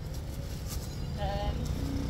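A motorbike engine running steadily in street traffic, with a short voice fragment about a second in.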